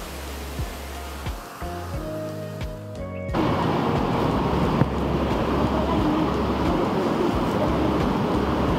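Background music with held notes, then about three seconds in, the loud, steady rush of a small waterfall cascading over rocks.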